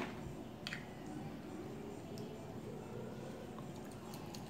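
Quiet room tone with a few faint clicks from a small glass test tube being handled and capped.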